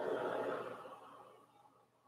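A person's long, audible exhale, strongest at the start and fading away over about a second and a half.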